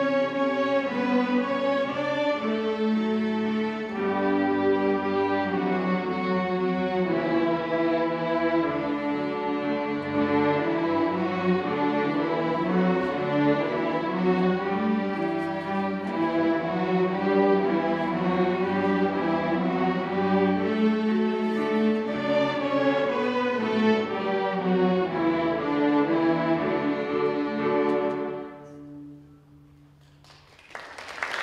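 A beginning middle-school string orchestra of violins, violas, cellos and double bass playing a piece together. The music stops a couple of seconds before the end and the sound dies away.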